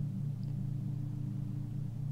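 A steady low drone of several held tones, unchanging throughout.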